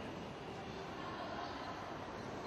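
Steady background noise of a pool hall, a continuous hum with no ball strikes.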